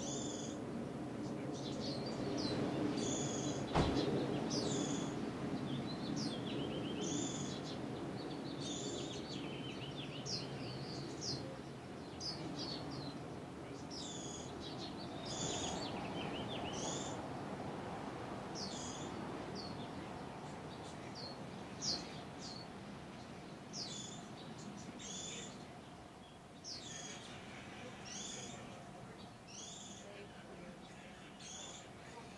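Goldfinches calling: a continual series of short, high, downward-sliding chirps, one every half-second to second, over a steady low background rumble. A single sharp knock sounds about four seconds in.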